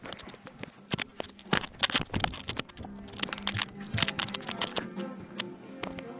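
Irregular clicks and knocks of footsteps and a handheld camera being carried, over music with a steady low note.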